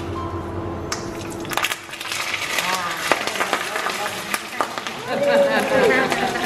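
Knotted pandan leaves sizzling in a pan of hot oil, starting about a second and a half in, with a few sharp clinks from a utensil against the pan.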